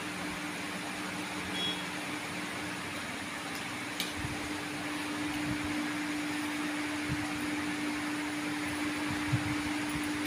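Steady low hum with an even hiss from a running electric fan, with a single click about four seconds in.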